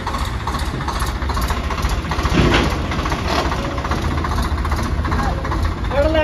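Swaraj tractor's diesel engine running steadily at low revs as the tractor is driven slowly, with a brief louder burst about halfway through.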